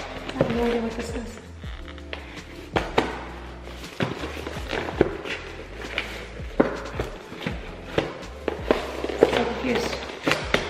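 A small cardboard gift box being handled and opened by hand, giving a string of short taps, knocks and rustles, over background music.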